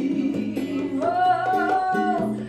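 A woman singing into a handheld microphone over a plucked guitar accompaniment, holding one long note from about halfway through.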